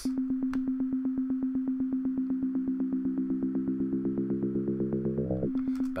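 Reaktor Blocks synthesizer voice, an oscillator frequency-modulated by a second oscillator and played by an 8-step sequencer, repeating one buzzing note in a fast even pulse of about eight notes a second. About five seconds in the pitch briefly swoops up and back down.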